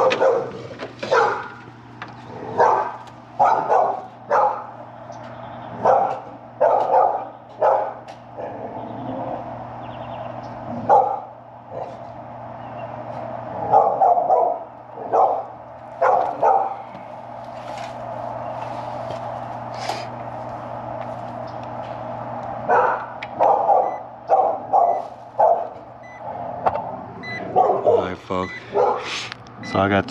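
A dog barking repeatedly in short bursts, in several runs with pauses between, over a steady low hum.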